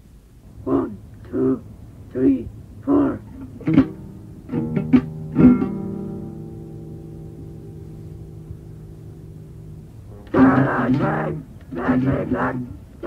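Lo-fi cassette demo recording of a guitar: five short stabbed chords, then a few quick strums and a chord left ringing and fading for about four seconds. Voices come in near the end.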